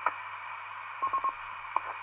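A 2-metre FM amateur radio transceiver's speaker hissing during the gap between two stations' overs, with a sharp click right at the start and a short burst of buzzy beeps about a second in.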